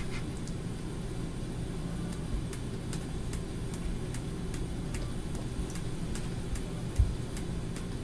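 Stylus of a Cintiq 13HD pen display tapping and scratching against the screen in short quick strokes. The clicks are faint, several a second, over a steady low hum, with one low thump near the end.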